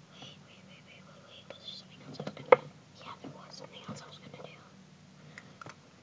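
Soft whispering with light clicks and rustles; one sharper click about two and a half seconds in.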